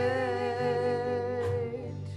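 Worship band playing a gospel song: the singers hold a long note with vibrato over acoustic guitar and bass, the note ending about a second and a half in.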